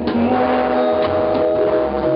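Live R&B band: a bowed violin playing long held notes over bass guitar, guitar and a steady drum beat.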